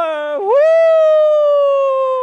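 A voice drawing out the end of a shout of "Yes, sir!" into a long held call, slowly falling in pitch. About half a second in it dips and swoops back up, then carries on.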